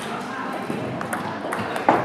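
Table tennis balls clicking off bats and tables in a rally, several sharp hits with the loudest near the end, over background children's chatter.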